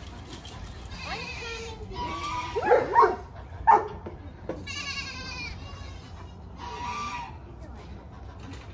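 Nigerian Dwarf goats bleating, about five separate calls with a wavering pitch, the loudest around the middle. These are hungry goats calling at feeding time.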